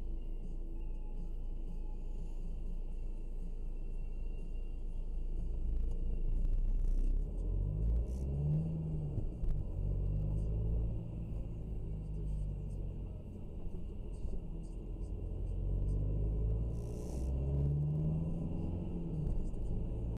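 Car engine and road rumble heard from inside the cabin as the car pulls away and accelerates, the engine note climbing and then dropping twice, around the middle and again near the end.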